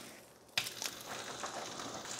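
Faint sizzle of an egg frying in butter in a HexClad hybrid frying pan, coming in about half a second in after a moment of dead silence, with a few faint ticks.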